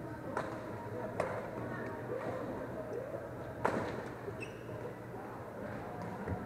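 Badminton racket hits on a shuttlecock in a doubles rally: three sharp cracks, the loudest a little past halfway, over a steady murmur of voices in the hall.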